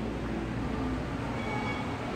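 Steady low rumble of background noise in an indoor aquarium gallery.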